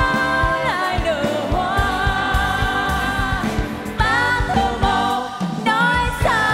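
Live band playing a ballad, with a female lead and a backing group of two women and a man singing long held notes, some with vibrato, over a steady beat.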